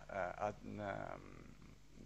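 Speech only: a man's hesitant, drawn-out filler "a, a, um", trailing off into a brief pause a little past halfway.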